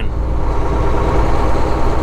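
Semi truck's diesel engine and cab drone heard from inside the cab while the truck is driving, a steady low rumble.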